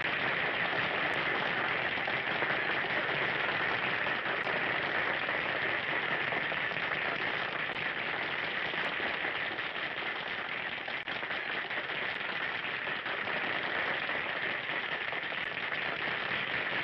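Audience applause, a dense steady clapping that runs on evenly once the music has ended.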